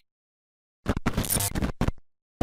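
Logo-animation sound effect: a noisy burst about a second in, lasting under a second with a brief break, then a short second burst just before the end, after dead silence.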